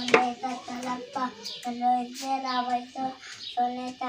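A child chanting a prayer in a sing-song voice, repeating short syllables in brief phrases held on one steady pitch. A sharp click sounds right at the start.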